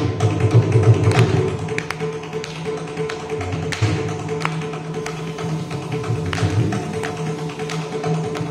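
Mridangam and morching playing a Carnatic tani avartanam: crisp drum strokes and the twang of the jaw harp over a steady drone. It is densest and loudest in the first second and a half, then lighter.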